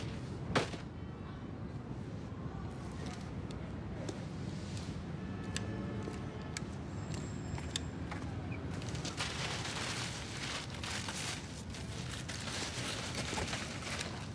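Steady outdoor background noise with a single sharp knock about half a second in, then a few seconds of dense crackling rustle near the end.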